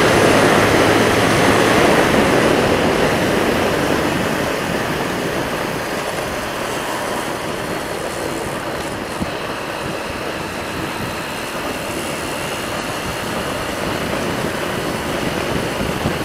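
Motorcycle riding at speed on a concrete highway: steady rushing wind over the microphone mixed with engine and tyre noise, growing somewhat quieter over the first several seconds and then holding.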